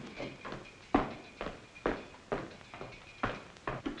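A run of sharp knocks, about two a second and unevenly spaced, with some louder than others.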